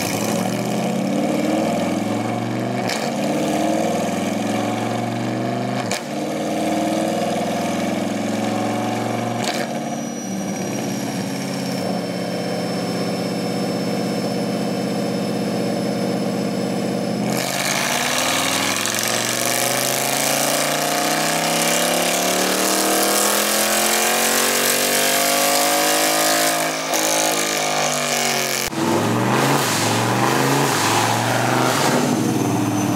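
2020 C8 Corvette's 6.2-litre V8 on a chassis dyno, running through straight pipes with no cats and no stock muffler. For the first ten seconds the revs step up through the gears, then they hold steady. About seventeen seconds in the engine goes to full throttle, much louder, with the revs climbing for about nine seconds before falling off near the end.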